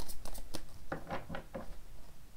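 A deck of tarot cards being overhand-shuffled by hand: a quick run of papery flicks and slaps that thins out in the second half.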